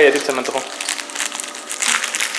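Plastic snack wrappers and bags crinkling as they are handled, a run of short irregular rustles.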